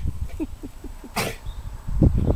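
A Pharaoh hound and a Bengal cat at play: a run of about five short, faint, squeaky sounds, then one sharp breathy snort-like burst just past a second in, over a low rumble of wind on the microphone.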